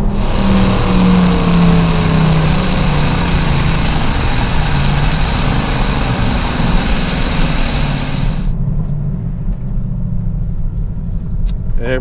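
Supercharged HEMI V8 of a tuned Dodge Challenger Hellcat driving at speed with its exhaust cutouts open, so the exhaust bypasses the rear mufflers. For about the first eight and a half seconds heavy wind and road rush swamps the engine's low drone, then the rush cuts off and a quieter engine drone carries on.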